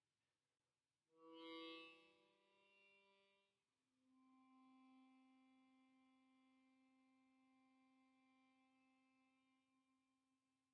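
Faint ringing musical notes. A bright note is struck about a second in and rings out for a couple of seconds. A lower, pure-sounding note follows at about four seconds and hangs on, fading slowly.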